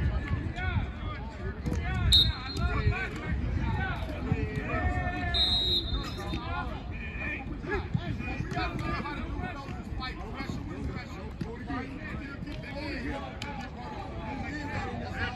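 Overlapping voices of football players and coaches talking on an outdoor practice field, a steady chatter with no single clear speaker, broken by two short high tones, one about two seconds in and a longer one about five and a half seconds in.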